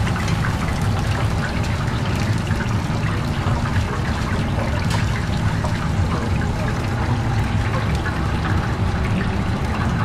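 Steady bubbling and crackling of a commercial deep fryer cooking chicken wings, over a constant low hum.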